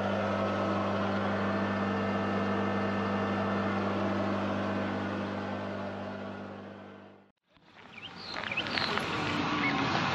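A machine running with a steady, low-pitched drone, fading out over a couple of seconds until it cuts to a moment of silence about seven seconds in. It is followed by quieter open-air background with a few short, high chirps.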